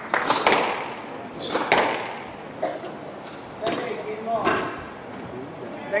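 Squash rally: the ball cracking off rackets and the court walls in sharp knocks roughly a second apart, with brief squeaks of court shoes on the wooden floor.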